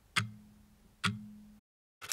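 Logo sting sound effect: two sharp clicks about a second apart, each followed by a short low hum that fades out.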